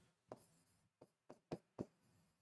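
Marker pen writing on a whiteboard: a handful of faint, short strokes as a word is written.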